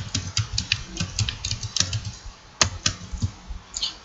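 Computer keyboard being typed on: a run of uneven key clicks, with one sharper click a little past halfway.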